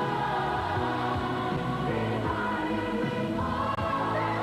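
Music: a choir singing over instrumental backing, with held low notes under the voices.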